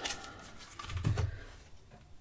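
Faint rustle of cards being handled, with a card drawn from a deck of rune oracle cards and laid down on a cloth-covered table, and a soft low bump about a second in.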